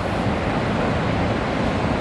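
Steady rush of surf and wind, with wind on the microphone.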